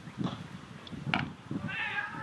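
Distant high-pitched shouts from players on a cricket field, starting near the end, over an irregular low rumble on the microphone. A brief sharp sound comes about a second in.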